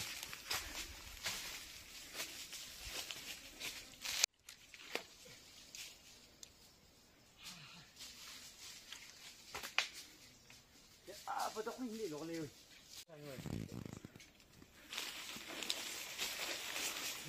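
Dry leaf litter and twigs crackling underfoot as someone walks through the forest. Faint voices talk briefly near the end, and the sound cuts out abruptly twice.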